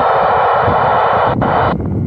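Loud rushing static from an Icom ID-4100A transceiver's speaker while it receives the TEVEL-3 satellite downlink. It has a click shortly before it cuts off abruptly about two seconds in.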